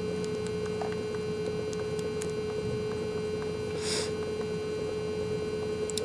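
Steady electrical hum from the recording setup, a single constant tone with fainter steady tones above it, with a short soft hiss about four seconds in.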